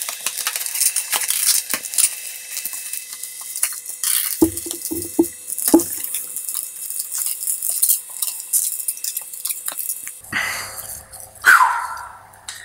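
Rustling and small clicks of a collapsible fabric flash-disc diffuser and a speedlite being handled as the flash is fitted into the disc's mount, with a few short knocks about five seconds in.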